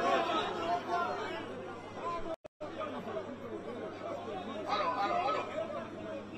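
A crowd of many people talking at once, voices overlapping, cut off for a moment about two and a half seconds in.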